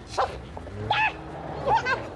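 A small dog yelping three times in short, high calls.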